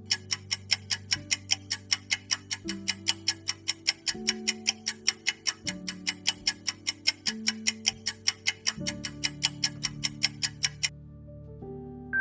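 Countdown clock ticking, about four sharp ticks a second, over soft background music with slowly changing chords. The ticking stops shortly before the end, and a short bright chime sounds just as the time runs out.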